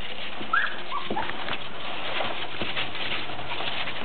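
Nursing standard poodle puppies giving a few short, high squeaks, mostly in the first second and a half, with fainter ones later, over a steady background hiss.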